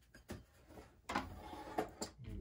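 A few light knocks with scraping and rubbing between them, as objects are handled and moved on a wooden workbench.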